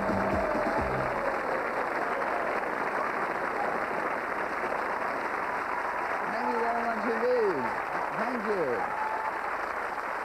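Studio audience applauding steadily, with the last notes of the theme music at the very start. A few voices call out over the applause about seven to nine seconds in.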